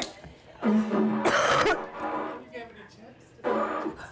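A beginner's attempts to sound a didgeridoo: a short buzzy toot that breaks into a sputtering rush of air, then another short toot near the end. These are failed attempts at the drone, with no steady lip buzz yet; the coach says she has to relax and actually create a seal.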